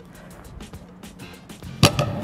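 A plate-loaded barbell set down on the rubber gym floor with a single loud clank and a short ring near the end, over steady background music.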